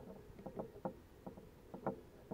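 Small plastic clicks and taps of a propeller being fitted by hand onto a DJI Spark drone's motor, about half a dozen scattered through, two close together near the end.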